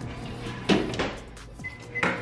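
Over-the-range microwave oven door shut with two knocks, then a short high keypad beep near the end as it is set.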